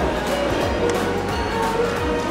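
Background music with a steady beat and held melody notes.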